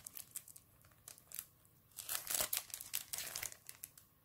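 Clear plastic sticker packaging crinkling as it is handled, in short scattered rustles that come thicker in the second half.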